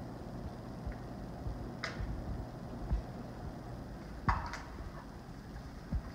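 Quiet room hum with a few light clicks and knocks of cups and a ruler being handled on a tabletop, the sharpest a brief ringing knock about four seconds in.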